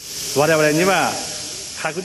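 A voice speaking briefly over a steady high hiss in the recording.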